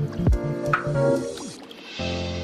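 Lo-fi hip-hop instrumental: a deep kick drum just after the start and a snare hit under a second in, over sustained bass and chord notes. The beat thins out and goes quieter near the end.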